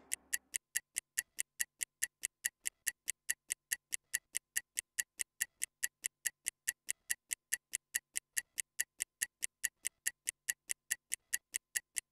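Stopwatch ticking sound effect, an even run of about four ticks a second, timing a 15-second rest interval.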